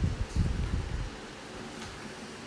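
Stylus writing on a tablet screen, picked up through the tablet as a quick run of soft, low knocks for about the first second, then faint steady hiss.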